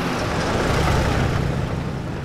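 A city bus passing close by on the road, its engine and tyre noise swelling to a peak about a second in and then easing off.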